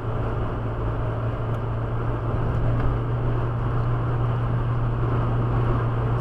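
A car at highway speed, about 110 km/h, heard from inside the cabin: a steady low drone of engine and tyres on asphalt, getting slightly louder as it speeds up.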